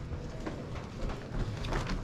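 Light knocks and rubbing from a canister vacuum and its hose being picked up and handled, over a low background rumble.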